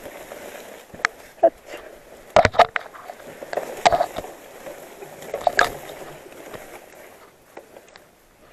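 Mountain bike forcing its way through dense bamboo and grass: leaves and stems swish and scrape against the handlebars, frame and camera, with several sharp knocks and rattles from the bike along the way.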